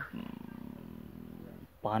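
A man's low, creaky hum through closed lips, lasting about a second and a half, with a rapid fluttering pulse in it, before he speaks again near the end.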